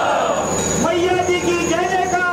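A crowd of men chanting a slogan in unison, their voices drawn out in long held calls.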